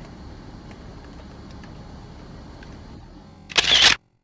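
Quiet background hiss with a few faint ticks, then near the end a loud, short phone camera shutter click as a photo is taken.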